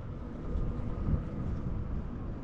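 Wind rumbling on the microphone of a rider on a Begode A2 electric unicycle, with the faint high whine of its hub motor drifting slightly lower in pitch.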